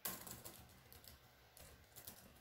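Faint typing on a computer keyboard: a string of quiet key clicks as a word is typed in.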